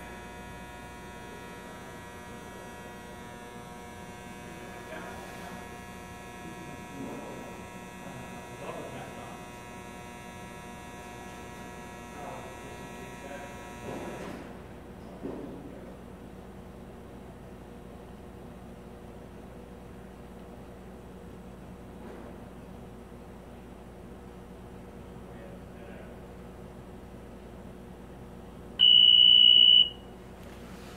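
Aetrium 6000 bubble tester running with a steady electrical hum and high whine; the highest whine drops out abruptly about halfway through. Near the end its alarm gives one loud, steady high beep lasting about a second, signalling that the 30-second test has completed.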